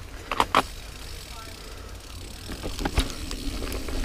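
Niner Jet 9 RDO mountain bike rolling over dirt singletrack, with sharp knocks and rattles as it hits bumps and roots, over a steady low rumble of wind and ride noise on the camera microphone.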